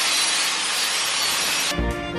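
A power tool in the shop cutting or grinding steadily, a loud continuous rasping noise. It cuts off near the end as music starts.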